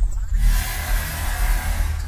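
Intro music with a heavy, steady bass and a rushing whoosh effect that sets in about half a second in.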